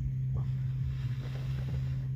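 Wind rushing over the microphone, with a steady low hum underneath.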